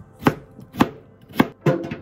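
Kitchen knife chopping through vegetables onto a cutting board: four sharp cuts about half a second apart.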